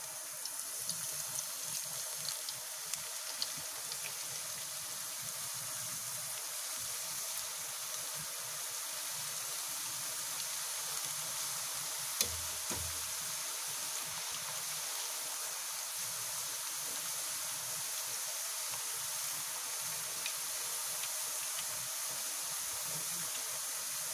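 Raw potato slices deep-frying in hot oil in a kadhai, a steady sizzle as moisture bubbles out of slices that are still raw inside, with small crackles and pops in the first few seconds. A single short knock about halfway through.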